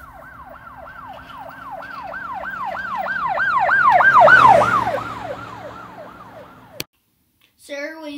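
Police car siren in a fast wailing yelp, about three sweeps a second, growing louder to a peak about four seconds in, then dropping in pitch and fading as the car passes by. It cuts off with a click near the end.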